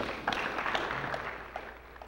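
Brief scattered applause from a room audience, starting at once and fading away near the end.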